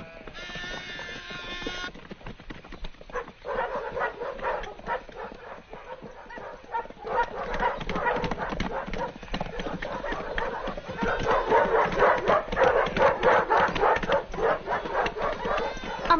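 Clatter of many animal hooves, a herd moving at pace, with irregular overlapping clops that grow louder about eleven seconds in.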